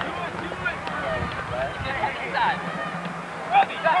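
Distant shouting voices of soccer players calling out on the pitch, faint and scattered, with a steady low hum underneath; a louder shout comes near the end.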